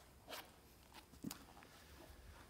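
Near silence broken by faint book-handling sounds: a brief soft rustle about a third of a second in and a light knock about a second later as a book is set down on the lectern and another picked up.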